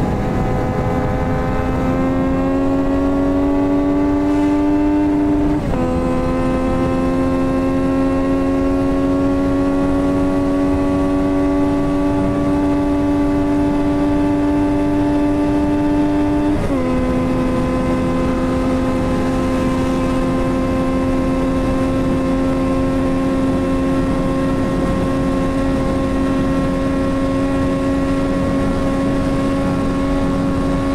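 Yamaha MT-09 inline three-cylinder engine, remapped and fitted with a full exhaust system, pulling hard at full throttle toward top speed. Its pitch climbs slowly and drops sharply at two upshifts, about six and seventeen seconds in, over a steady rush of wind.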